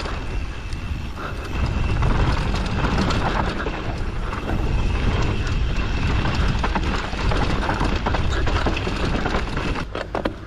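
Mondraker Summum downhill mountain bike riding fast down a dirt trail: tyres crunching over dirt and stones, with the chain and bike rattling over bumps. Wind buffets the chin-mounted action camera's microphone with a heavy rumble.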